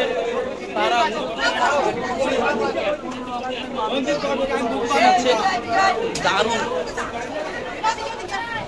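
Several people talking at once: passengers chattering in a crowded train carriage.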